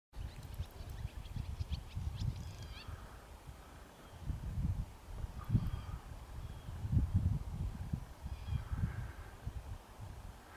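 Wind buffeting the microphone in gusts, with faint, scattered bird calls in the distance: a few high chirps near the start and some lower, honk-like calls later on.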